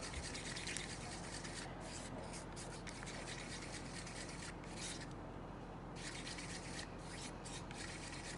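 Wooden craft stick stirring thick metallic acrylic paint and Floetrol in a paper cup: a faint, steady scraping and rubbing of irregular strokes, which lets up briefly about five seconds in.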